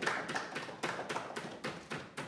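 Faint, irregular small clicks and light taps, about a dozen in two seconds, with no other sound.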